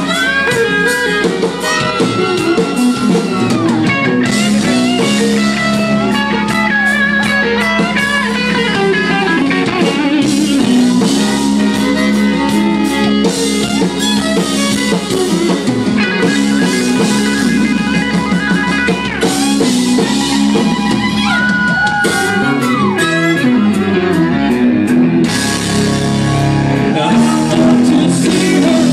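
Live country band playing an instrumental break: bowed fiddle and electric guitar over bass and drums, loud and steady, with notes sliding up and down in pitch.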